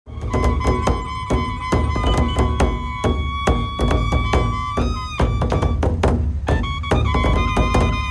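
Large nagara drums beaten hard with curved wooden sticks in a fast, driving rhythm, several strokes a second, heavy in the bass. A held high-pitched melody line sounds over the drumming, changing pitch about five seconds in.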